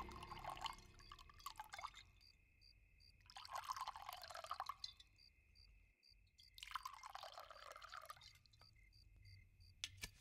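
Liquor poured faintly from a bottle into glasses, three pours with short pauses between them as one glass after another is filled.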